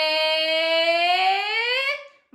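A woman's voice holding one long sung note at a steady pitch, rising slightly near the end and cutting off just before the next words. It is a drawn-out suspense note before she announces a name.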